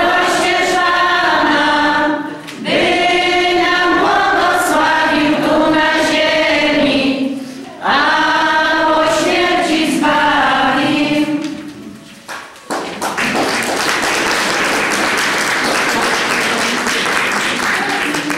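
Women's folk choir singing a Polish Christmas carol unaccompanied, in long phrases with short breaths between them. The singing ends about two-thirds of the way through, and applause follows.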